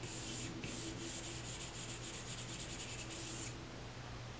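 Stylus tip rubbing across an iPad Pro's glass screen in a run of short scratchy brush strokes. The strokes come faster near the end and stop about three and a half seconds in.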